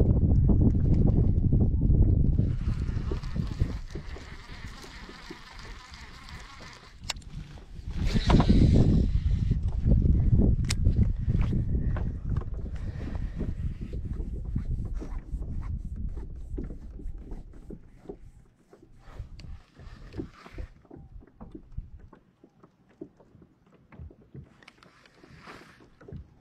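Wind rumbling on the microphone in gusts while fishing gear is handled in a small boat, with many small clicks and knocks that grow sparse and quieter near the end.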